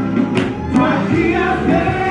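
Gospel worship music: several voices singing over instrumental accompaniment, with two sharp percussive hits within the first second.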